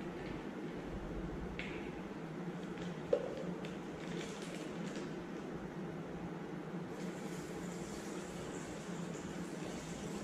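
A screw cap is twisted off a glass bottle and set down with a single sharp click about three seconds in. In the second half, peptone water is poured faintly from the bottle into a plastic sample bag, over a steady low hum of room equipment.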